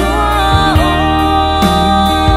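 A woman singing a slow gospel song, holding one long note that dips slightly and then settles, over a studio backing band with bass and drum beats.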